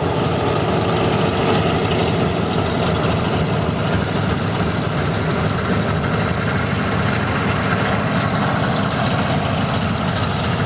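Boeing B-17G Flying Fortress's four Wright R-1820 Cyclone radial engines running as the bomber taxis, a steady, even drone of propellers and engines.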